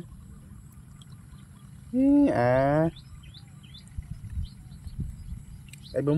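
A single drawn-out vocal sound about two seconds in, lasting about a second, its pitch rising briefly and then held. Faint bird chirps come and go behind it.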